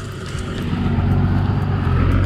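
Four-wheel-drive SUV engine running as it climbs a dirt trail toward the listener, a steady low hum that grows louder over the first second and then holds.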